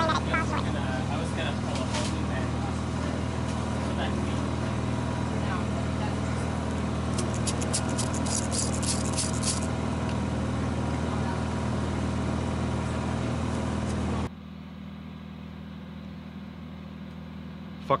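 A steady low mechanical hum, like a running motor, with a rapid burst of faint high clicking from about seven to nine and a half seconds in. The hum drops away sharply about fourteen seconds in, leaving a quieter background.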